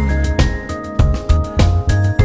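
Background music with a steady beat: a pop song track with drums.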